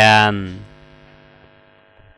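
A man's voice ending a narration, his last syllable drawn out and fading away over about a second and a half into a faint steady hum.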